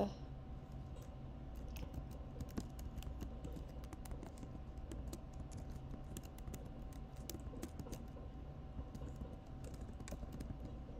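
Typing on a computer keyboard: a run of irregular key clicks throughout.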